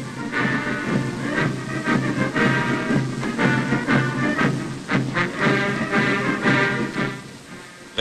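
Military band music playing a march, fading down near the end.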